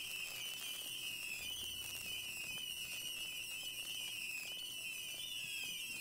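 Fireworks from a mass battery ignition near their end, as the last batteries burn out: a steady high whistle, wavering slightly in pitch, over a faint hiss.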